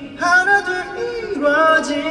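A man singing wordless 'ooh' notes into a handheld microphone over a hall's sound system. He holds long notes and slides from one pitch to the next, with a brief break just at the start.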